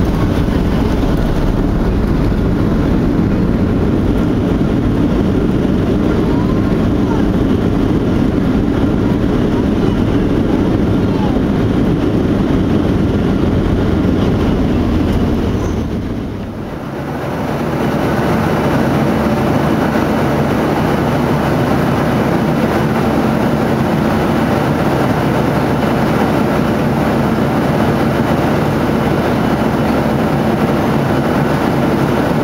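Cabin noise of a Boeing 737 jet: a loud rumble as the plane rolls along the runway, then, after a brief dip just past halfway, the steadier hum of engines and airflow in flight.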